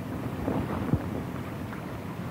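Strong wind buffeting the microphone, with cloth flags flapping and fluttering on a ship's rigging line. There is one sharper snap just under a second in.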